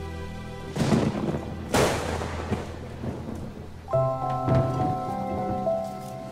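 Two sudden, loud noisy bursts about a second apart, each fading away, followed by soft background music with sustained notes returning near the middle.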